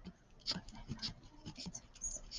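Pen writing on paper: a run of short, faint scratches as the digits of a decimal number are written out.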